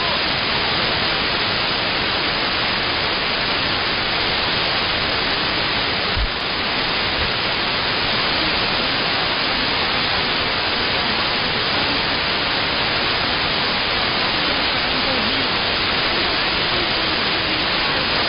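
Steady shortwave static and hiss from an RTL-SDR receiver in AM mode, tuned to a weak, fading broadcast whose programme is buried in the noise. There is a brief click about six seconds in.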